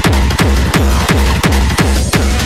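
Loud hardcore electronic dance music from a DJ set, driven by a fast, steady kick drum beat.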